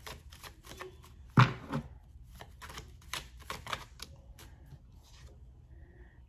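Tarot cards being shuffled by hand: a quick, irregular run of light card snaps and clicks.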